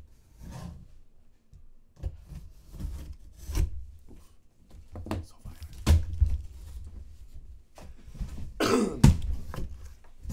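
A large cardboard box being handled and opened on a table: a string of knocks and thumps as the box is moved and its lid lifted, with a louder scrape-like burst near the end as the lid comes open over the packing paper.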